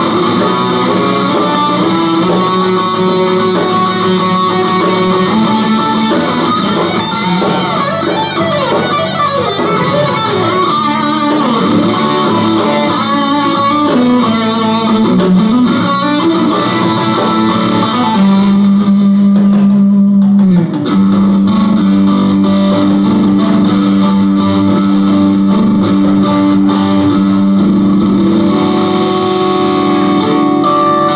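Ibanez RG electric guitar playing an instrumental rock lead, with fast melodic runs and pitch bends. About 18 s in it holds a long sustained note that bends down just after 20 s, then carries on with held notes.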